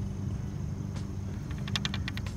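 A steady low hum under light outdoor noise, then a quick run of small sharp clicks near the end as a skirted jig is handled close to the microphone.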